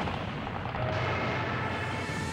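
Shipboard anti-aircraft gunfire and explosions in a dense, continuous battle din, heavy in the low end. A faint steady high tone joins about a second in.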